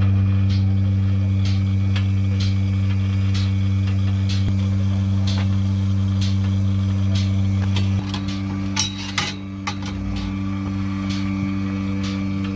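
Portable milking machine running: the electric vacuum pump hums steadily while the pulsator clicks about once a second. About eight seconds in the hum drops in level and changes, with a brief clatter as the teat cups are fitted to the udder.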